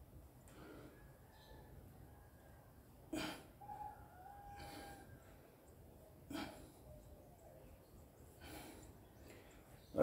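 A man's short, sharp exhalations while exercising, a few seconds apart, over faint room hiss.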